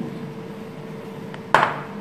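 A plastic packet of frying powder being tipped and shaken over a bowl, with one sharp crackle or knock about one and a half seconds in, over a faint steady hum.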